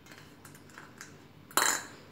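A few faint clicks, then a brief loud clatter about one and a half seconds in, of kitchenware being handled.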